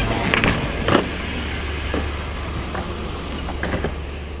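BMX bike riding in a concrete skatepark bowl: a steady low rumble with a few sharp knocks in the first second and fainter clicks later, slowly getting quieter.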